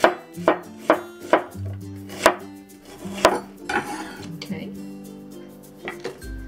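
A cleaver slicing an onion on a wooden cutting board: about seven sharp, irregularly spaced knocks as the blade strikes the board.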